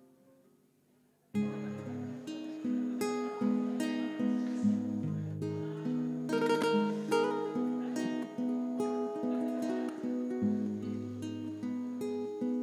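Acoustic guitars playing a picked introduction with chords over bass notes. The guitars come in suddenly about a second in, after near silence.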